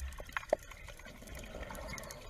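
Faint underwater sound from scuba footage: a soft bubbling, watery haze with a few scattered small clicks.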